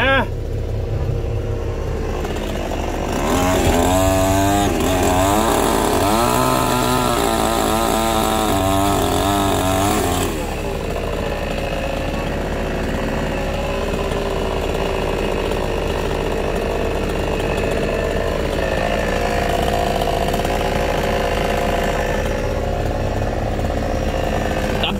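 A chainsaw runs and cuts for about seven seconds, starting a few seconds in, its pitch dipping and rising as it bites into the wood. A heavy engine idles steadily under it the whole time.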